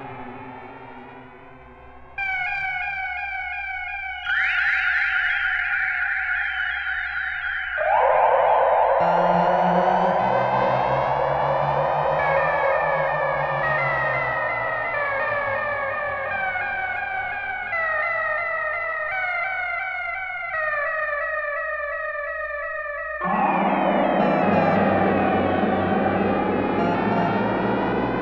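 Electronic music from a modular synthesizer: held, stacked tones that switch abruptly to new chords every few seconds, a couple of seconds in, about four seconds in, about eight seconds in and again near the end, with some pitches slowly bending up and down in between.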